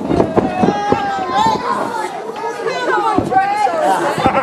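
Overlapping voices of a live audience shouting and chattering at once, with no single clear speaker, and a couple of short knocks, one about three seconds in.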